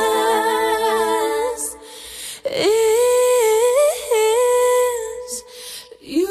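Female pop vocal group singing a cappella with no instruments: long held notes in close harmony, a short break about two seconds in, then a long sustained note that steps up and down in a melismatic run.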